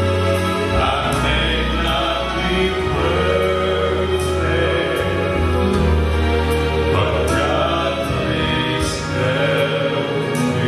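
Live gospel vocal group singing in close harmony through microphones, over instrumental accompaniment with long held bass notes.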